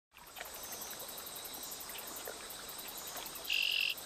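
Chorus of insects and frogs: a rapid, regular high pulsing runs steadily, and a short, loud buzzing call cuts in for about half a second near the end.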